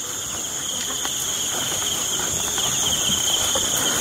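Night-time insect chorus, crickets trilling steadily at two high pitches, with faint scattered rustles and footfalls of people walking through tall grass.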